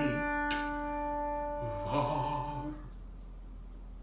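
Grand piano holding a ringing chord over a low, wavering trill in the bass, with a fresh soft attack about two seconds in; the sound dies away to quiet about three seconds in.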